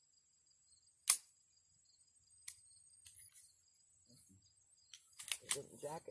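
Sharp metallic click from an emptied gun's action being worked, about a second in, then a fainter click a second and a half later and a few more clicks near the end. Insects trill steadily underneath.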